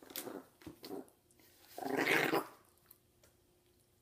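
Chihuahua growling in short bursts, with one louder growl about two seconds in: a guarding warning as a hand reaches toward the presents she protects.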